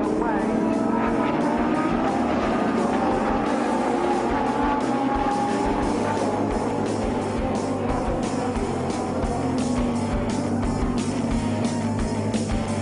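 Lamborghini Super Trofeo race cars' V10 engines running, with a falling pitch as one goes by about a second in, mixed with rock music that has a steady beat.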